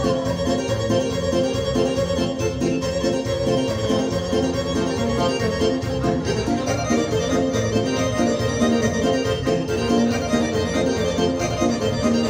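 Live Balkan folk music for a kolo circle dance, played on an electronic keyboard with an organ-like sound and accompanied by a violin, keeping a steady dance rhythm.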